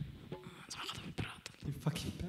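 Quiet whispered talk with a few small clicks and knocks, and no music playing.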